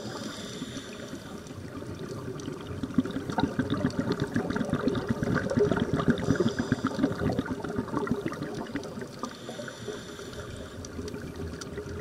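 Underwater sound of a scuba diver breathing: three hissing inhalations through the regulator a few seconds apart, with a rumble of exhaled bubbles. Under it runs a steady crackle of fine clicks from the reef.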